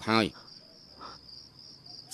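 Crickets trilling steadily in a high, even band, with a short bit of male speech at the start.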